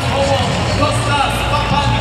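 Arena public-address announcer's voice echoing through the hall during player introductions, over music with a steady low bass.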